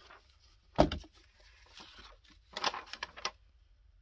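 A plastic glue bottle set down on the table with one sharp knock about a second in, then paper rustling as it is folded and pressed flat, around three seconds in.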